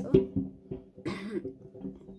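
A person says "oh" and coughs, with a second noisy burst about a second in.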